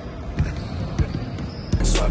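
Basketballs bouncing on a wooden gym floor, a few separate thuds over a general room din. Near the end, loud hip-hop music cuts in suddenly.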